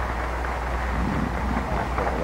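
Steady hiss and crackle with a constant low hum: the surface noise of an old optical film soundtrack. Faint, indistinct voices show through about halfway in.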